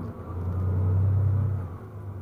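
Coach bus engine heard from inside the passenger cabin while driving, a low rumble that swells for about a second and then eases off.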